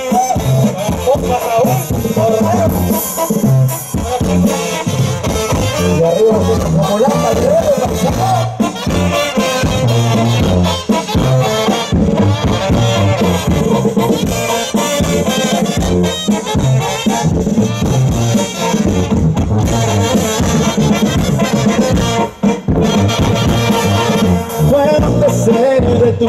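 Live Mexican banda music from a brass band playing a dance tune through a large sound system, with a pulsing tuba bass line under the brass melody. No verses are sung here, so it is an instrumental stretch of the song.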